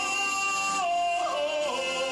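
A man singing a long held note into a handheld microphone. About a second in, the pitch steps down and bends before settling on a lower held note.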